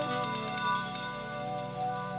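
Live band playing an instrumental passage, a saxophone holding long notes over electric guitar backing.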